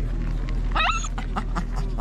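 A dog giving a short, high whine that rises in pitch about a second in, then a couple of brief yips.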